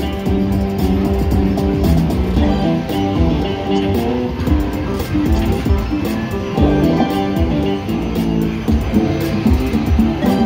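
Light & Wonder Cash Crop slot machine's bonus-round music, a steady run of short stepped notes, playing while the crop spins count down.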